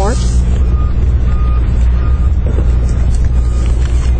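Steady low hum of a running motor, with a faint high-pitched beep repeating about four times over it.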